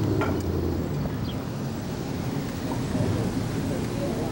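Steady low rumble of a moving vehicle's engine and road noise, heard from on board.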